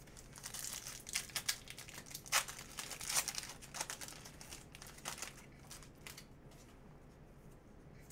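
A foil trading-card pack wrapper being torn open and crinkled by hand, in a quick run of sharp crackles. The crinkling thins out to a few faint rustles after about five seconds.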